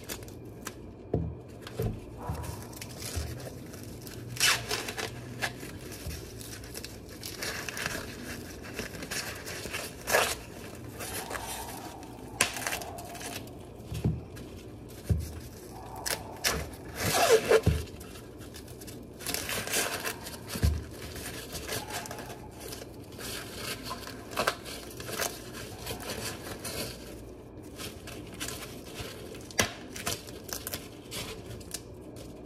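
Green husks being ripped and peeled by hand off fresh ears of glutinous corn, in irregular tearing and rustling bursts, the loudest a little past halfway. A few dull knocks come between them as the ears are handled on a wooden board.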